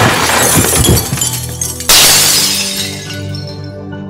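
Sustained background music with two loud crashing, shattering sound effects: one carries in at the start, and a second hits about two seconds in and fades away.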